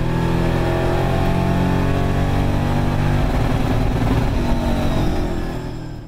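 Euro NASCAR stock car's V8 engine running hard under load, heard from inside the car, steady in pitch with a slight change about three seconds in. The sound fades out near the end.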